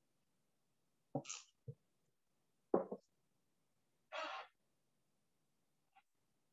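A man's short breath noises close to the microphone: a few brief sniffs or breaths about a second apart, the last a hissing one about half a second long.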